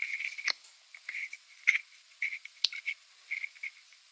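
Irregular short scratchy crackles and a few sharp clicks from a wired earphone's inline microphone being handled.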